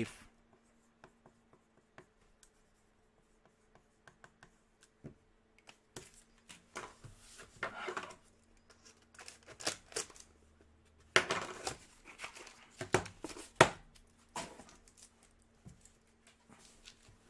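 Hands handling trading-card packaging on a desk: a cardboard card box and card holders being moved and opened, with irregular scrapes, rustles and sharp clicks, busiest about eleven to fourteen seconds in. A faint steady hum runs underneath.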